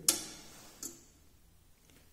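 A sharp click of a bench DC regulated power supply's power switch being switched off, followed by a fainter second click a little under a second later.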